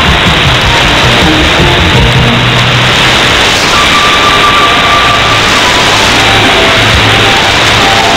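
Music from a shortwave AM broadcast on 9590 kHz, received with a software-defined radio. The music is faint, with a few held notes, under a steady hiss of static and noise.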